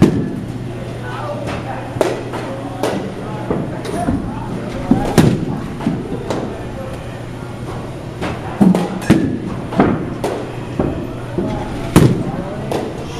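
Baseball bats cracking against pitched balls in batting cages, with a string of sharp hits at irregular intervals, several of them close together near the end, over a steady low hum.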